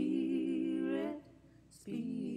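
A solo voice holding one sung note for a little over a second, then a short pause and the next sung phrase starting near the end.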